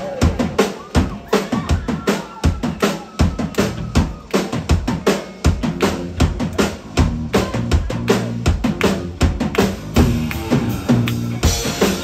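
Live rock band playing at full volume: a drum kit beats out a fast, driving rhythm of several hits a second over sustained electric guitars.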